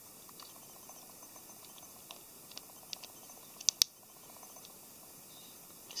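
Light clicks and taps of small plastic model parts being handled against a plastic stand, with two sharper clicks close together a little past the middle.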